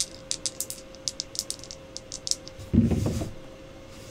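Two dice rattling and clicking together in a cupped hand for about two and a half seconds, then a short dull thump about three seconds in.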